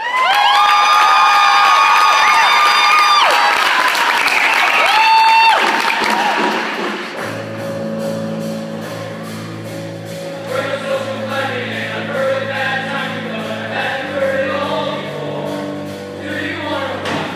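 Show choir of mixed voices opens with a loud held chord that cuts off together about three seconds in, followed by audience cheering and applause. From about seven seconds a pit band comes in softly with low sustained chords under the choir's singing.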